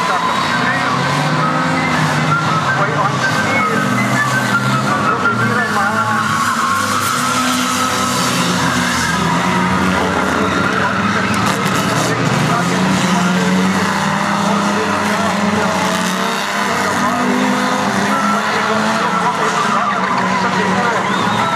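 Several unlimited banger race cars' engines running and revving together, their pitches rising and falling as the cars race, with tyres skidding. A few sharp knocks come around the middle.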